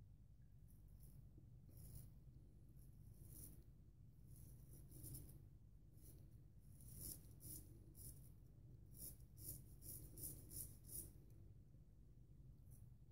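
Faint scratchy rasps of a vintage Wade & Butcher 15/16" wedge straight razor cutting stubble through lather, short strokes one after another, coming thickest in a quick run in the second half. A low steady hum sits underneath.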